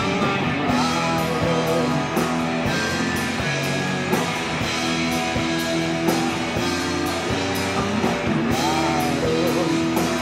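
Live rock band playing: electric guitars, bass and drum kit keeping a steady beat, with a man singing lead vocals.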